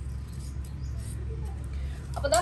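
Tailor's scissors cutting through cloth: a few faint, crisp snips over a steady low hum.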